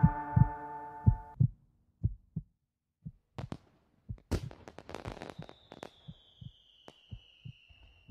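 Edited soundtrack ending: soft held music chords fade out about a second in, leaving a heartbeat sound effect of low thumps that grows sparser. From the middle on there are scattered clicks and crackles, and a faint high tone slowly falling in pitch.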